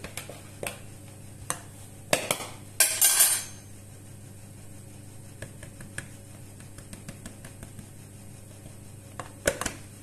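A drinking glass knocking lightly against a plastic mixing bowl while flour is measured into it, with a short swishing rush of flour about three seconds in and a few more light clicks near the end.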